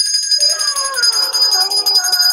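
A small bell being shaken, ringing steadily with a rapid jingle. A long pitched tone slides slowly downward underneath it.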